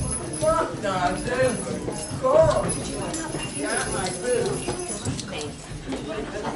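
Several people's voices overlapping indistinctly, with light knocks and clatter among them, more of it in the second half.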